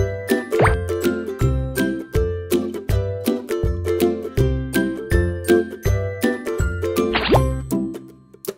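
Light, upbeat background music with a steady beat of bass notes and short plucked-sounding notes, broken by two quick rising sweep effects, one about half a second in and one near the end.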